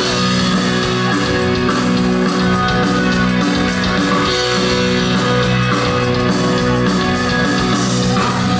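Live band playing an instrumental passage, led by an electric guitar, with steady sustained notes over the band and no singing.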